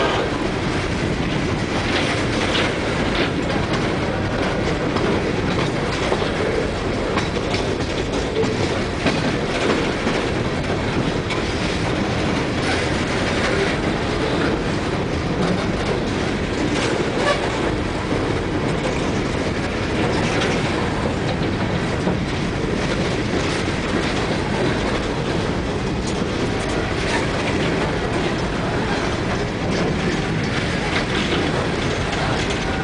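Empty open-top coal cars of a Union Pacific freight train rolling past close by: a steady rolling rumble with frequent sharp clicks and clanks from the wheels and cars.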